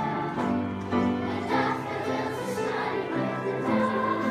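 A large group of children singing a song together in chorus, with the held notes changing every fraction of a second.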